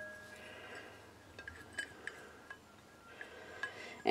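Faint small clinks and ticks of a silicone spatula scraping oil out of a stainless steel measuring cup over a bowl, a handful of light taps spread across a few seconds after a short fading ring.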